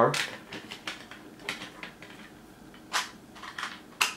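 Plastic parts of a diecast model car clicking and knocking together as they are handled and pressed onto their locating pins: a scatter of small clicks, with one louder click about three seconds in.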